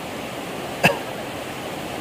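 Shallow stream running over stones: a steady rush of water. Just under a second in, one brief vocal sound, a short cough-like grunt, stands out above it.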